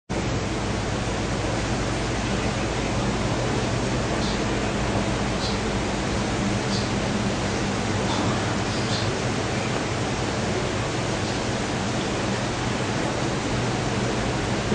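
Steady hiss with a low, constant hum underneath, with no speech: the background noise of the recording or sound system.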